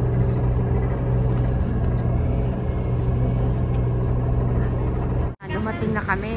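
Tour coach's engine running with a steady low hum, heard from inside the cabin. It cuts off abruptly at an edit about five seconds in, and voices follow.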